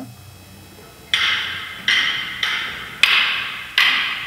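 About five sharp clacks of prop sabers striking each other, unevenly spaced, each with a short ringing tail.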